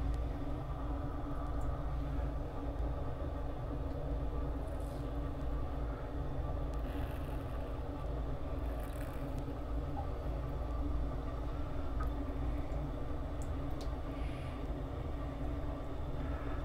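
Steady low machine hum with a few fixed tones and a rumble underneath. Over it come a few brief, faint scrapes of a CBL Orion safety razor drawn across lathered stubble.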